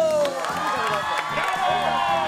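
Studio audience cheering and clapping, with show music coming in about half a second in and a shouting voice trailing off at the start.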